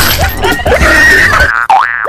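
Loud background music. About one and a half seconds in, it gives way to a cartoon boing-style sound effect whose pitch swoops down and back up.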